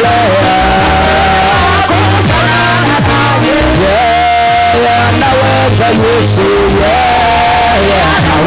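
Live church worship music: a man sings long held, sliding notes into a microphone over a steady bass and band accompaniment, loud throughout.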